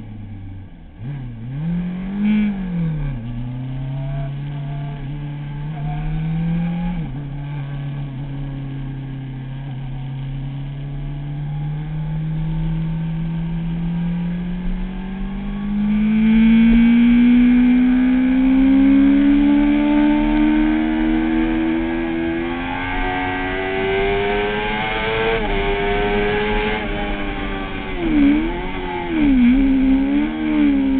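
Kawasaki ZX-6R inline-four sport bike engine heard from onboard on a race track. The note dips and rises in the first few seconds, then climbs steadily under a long pull, with small steps at gear changes and wind rush building with speed. Near the end it drops in quick up-and-down swoops as the rider slows.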